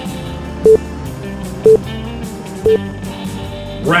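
Three short electronic beeps, evenly spaced about a second apart, counting down the last seconds of a workout interval timer over guitar-driven background music. A quick rising sweep near the end marks the switch to the rest period.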